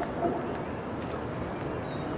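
Steady outdoor street ambience: an even hum of distant traffic and town noise, with a brief louder sound near the start.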